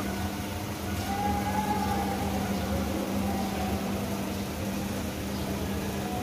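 Steady low rumble and hum of room ambience, with a constant droning tone underneath.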